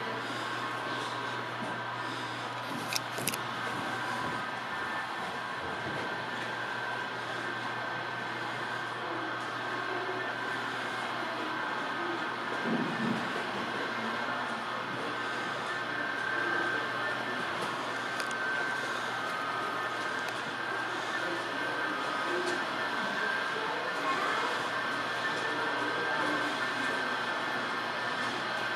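Steady indoor background sound, an even hum and hiss with faint thin tones and distant indistinct sounds, with a couple of small clicks about three seconds in.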